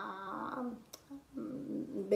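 A woman's drawn-out hesitation sound, a held 'eeh' at a steady pitch, trailing off in the first half-second. After a short click comes a low, rough voiced murmur as she gathers herself to go on speaking.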